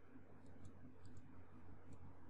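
Faint, irregular clicks of a computer mouse, about half a dozen in two seconds, over a low steady hum.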